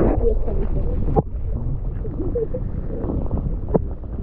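Muffled underwater sound through a GoPro's waterproof housing: a steady low rumble of moving water, with a sharp knock about a second in and another near the end.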